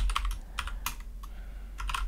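Typing on a computer keyboard: sharp key clicks in short, irregular runs.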